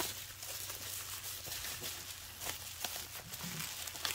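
Plastic bubble wrap rustling and crinkling softly as hands unwrap a package, with scattered small crackles.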